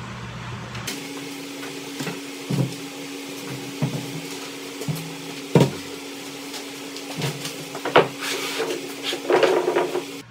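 A 4x8 sheet of plywood being handled and laid down on 2x4s on a concrete floor: a series of wooden knocks and thuds, the loudest about halfway through and again about two seconds later, over a steady low hum.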